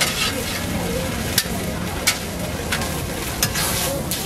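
A flatbread sizzling steadily as it fries on an oiled flat-top steel griddle, with sharp clicks of metal tongs and a spatula against the plate several times. Near the end the sizzling swells briefly as a slice of ham is pressed onto the hot griddle.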